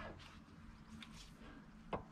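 Near quiet: faint outdoor background with a steady low hum, and a light click near the end.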